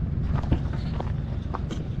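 Footsteps crunching on snow and hand-held camera handling knocks, a few irregular crunches over a steady low rumble.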